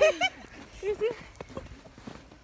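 Short bursts of laughter that fade out within about a second, with one sharp tap about one and a half seconds in.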